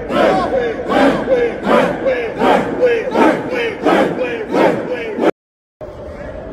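A team of football players shouting together in unison, a rhythmic chant of about seven short shouts, one every three-quarters of a second, which cuts off suddenly near the end.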